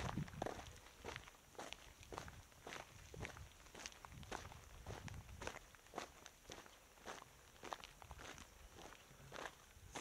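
Footsteps crunching on a dry salt-pan crust, faint and even at about two steps a second.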